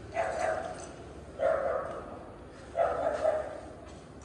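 A dog barking three times, a little over a second apart.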